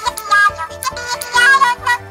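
Two Little Live Pets Wrapples interactive plush toys singing together: an electronic melody of short, high pitched notes from their built-in speakers, triggered by holding the two toys close to each other.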